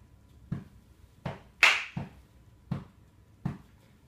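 Soft, evenly spaced taps about every three-quarters of a second, keeping the tempo as a count-in before a piano piece begins. One louder, hissy sound comes about halfway through.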